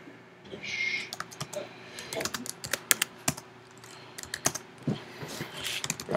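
Typing on a computer keyboard: irregular key clicks in quick runs separated by short pauses, as shell commands are entered.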